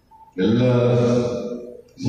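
A man's voice speaking into a podium microphone: a brief silence, then one phrase starting about a third of a second in and trailing off near the end.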